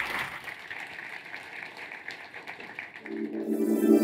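Audience applause fading away, then closing music coming in with steady held chords about three seconds in.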